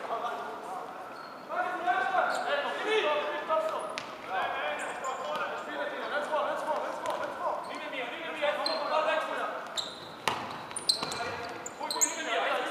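Futsal players' shouts and calls echoing around a large sports hall, with a couple of sharp thuds of the ball being struck, one about four seconds in and one near the end.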